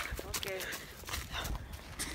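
Low rumble of wind and handling noise on a handheld camera's microphone while it is carried at a walk, with scattered faint footstep ticks and a brief faint voice about half a second in.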